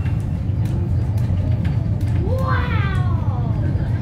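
Wellington Cable Car funicular carriage running on its rails, a steady low rumble heard from inside the car. About two seconds in, a pitched wail rises and then falls away over about a second.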